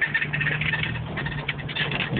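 Jeep Wrangler YJ driving, heard from inside the cab: a steady low engine hum under a busy, irregular clatter of rattles and squeaks from the body.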